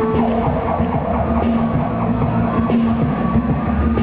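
Live electronic-folk music from a laptop and guitar over a steady low drone; a held higher note stops just after the start.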